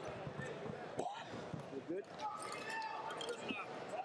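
Busy indoor arena hubbub: many voices talking at once, with scattered thuds and short squeaks from shoes on the wrestling mats, and a sharp knock about a second in.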